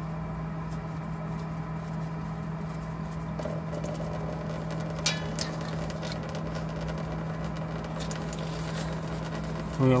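Fuel and water trickling from an opened water-separator drain into a drain pan, the separator being drained before the fuel filter is changed. A steady low hum runs underneath, with a couple of faint clicks about halfway through.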